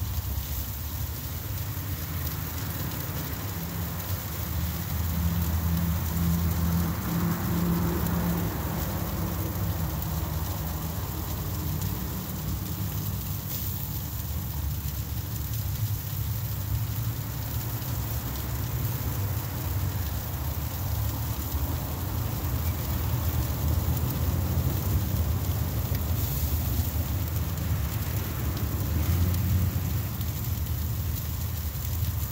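Steady crackling hiss of food sizzling on an outdoor grill, under a low wind rumble on the phone's microphone that swells a few seconds in and again near the end.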